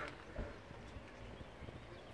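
Faint outdoor background noise with a soft low thump about half a second in and a few light ticks.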